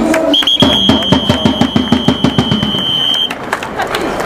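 A long, steady whistle blast held for about three seconds over fast, evenly spaced drum beats from a baseball cheering section; the whistle and drumming stop together near the end.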